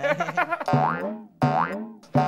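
Comedic 'boing' sound effect added in editing: two springy tones, each rising sharply in pitch, the second about one and a half seconds in.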